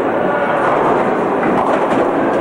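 Bowling ball rolling down a wooden lane, then hitting the pins near the end.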